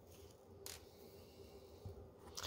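Near silence: faint steady room hum, with one soft brief noise a little over half a second in.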